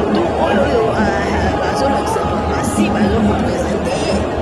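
People talking over one another: steady crowd chatter.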